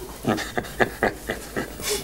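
People laughing in short, breathy bursts, about four a second.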